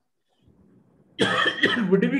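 A short pause, then a man coughs about a second in and goes straight back into speaking.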